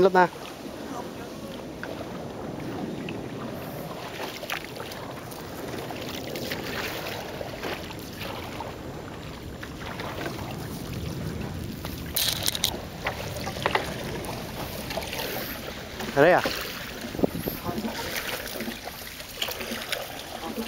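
Water sloshing around a small wooden boat as a cast net is pulled back in by hand, with a short splash about twelve seconds in.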